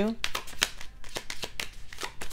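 A tarot deck shuffled by hand: a quick, irregular run of crisp card clicks.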